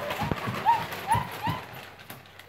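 Small dogs giving about four short, high yips, with their feet thumping on a hardwood floor.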